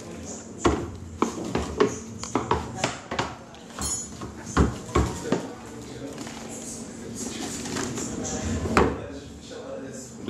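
Irregular knocks, taps and clatter of a plastic bottle of dark malt steeping in water being handled and set down on a stone countertop, with a busier run of knocks in the first half and one last knock near the end.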